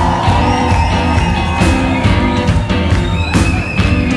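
Live band playing an instrumental passage on drums, bass, electric and acoustic guitars and keyboard, with a steady drum beat and held notes.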